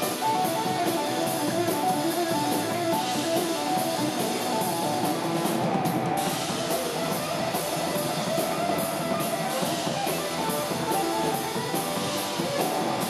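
Live rock band playing an instrumental passage: amplified electric guitar over drums, with a steady cymbal beat.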